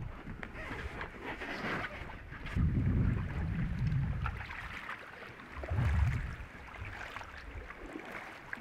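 Packraft being paddled on a calm river: light paddle splashes and water lapping at the inflatable hull. Two louder low rumbles come about two and a half seconds in and again near six seconds.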